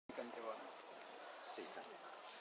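A steady, high-pitched drone of insects, with faint voices talking underneath.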